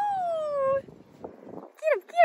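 Excited dog at play giving a long, high-pitched whining howl that falls in pitch and stops under a second in, then a couple of short yips near the end.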